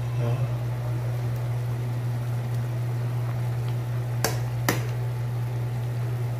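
A pot of chicken soup boiling on a single-burner stove, its bubbling heard over a steady low hum, with two sharp clicks a half-second apart a little past the middle.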